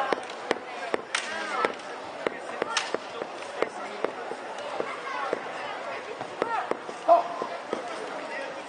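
Bamboo kendo shinai clacking against each other in sparring, a string of sharp, irregular knocks with voices in the hall behind.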